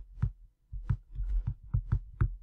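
A pen or stylus knocking and tapping on a tablet as words are handwritten: about six short, irregular knocks with a low thud.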